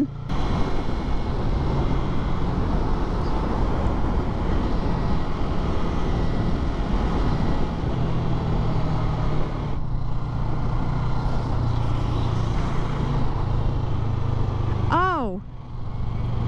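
Yamaha MT-03's parallel-twin engine running steadily under way, under heavy wind and road noise on the microphone, with a short dip in sound about ten seconds in. Near the end a brief sound rises and falls in pitch.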